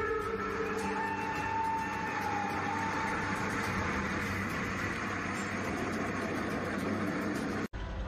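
A train's horn sounding, then the steady noise of a train running past at a crossing. The sound cuts off abruptly near the end.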